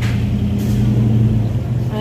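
A motor vehicle's engine running with a steady low hum, swelling to its loudest about midway and easing off again, as when a vehicle passes.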